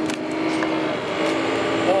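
Inside a moving city bus: steady engine and road noise with a steady hum and a few short rattles.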